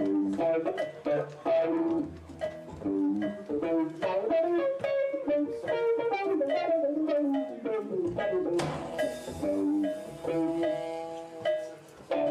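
A live jazz-fusion band plays a jam, with the electric guitar and electric bass playing quick runs of short notes over the drums. There is a burst of high hiss about nine seconds in.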